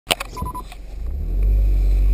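A few clicks and three short, evenly spaced electronic beeps as the dashboard touchscreen stereo is pressed. Then a loud, low rumble inside the car's cabin builds about a second in and holds steady as the Honda drives.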